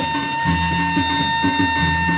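Sasak traditional music of the kind played for peresean stick fighting: a reed pipe holds one long high note over a repeating low beat, about two beats a second.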